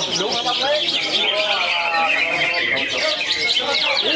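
Many caged songbirds singing at once in a dense, continuous chatter of chirps and trills, a green leafbird (cucak hijau) among them, with people's voices underneath.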